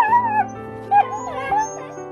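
An emaciated rescue dog crying out: two short, high-pitched, wavering cries that fall in pitch, one at the start and one about a second later, then a fainter one, over soft background music.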